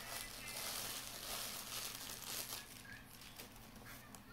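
Plastic packaging crinkling and rustling as hands pull a wrapped camera battery charger out of a cardboard box, loudest over the first three seconds and then fading.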